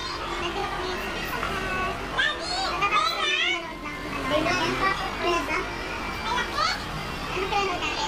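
Children's voices chattering, with a woman talking; a high, wavering child's voice stands out about three seconds in.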